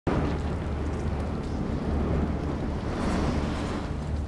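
A steady, deep rumble with a rushing, wind-like noise over it, the dark atmospheric sound effect of a drama scene.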